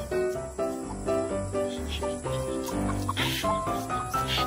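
Background music: a melody of short, stepping notes over a bass line, with a brief hiss about three seconds in.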